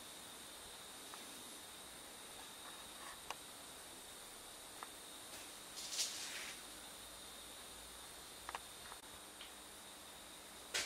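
Quiet steady hiss of room tone with a few faint clicks, and a brief rustle about six seconds in.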